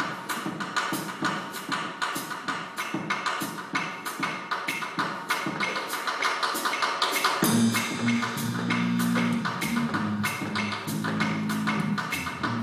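A live student jazz ensemble playing, with the drums keeping a steady, even beat. About seven seconds in, low held notes from the band join in.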